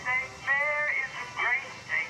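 A recorded song with a singing voice: short held notes that bend in pitch, in separate phrases.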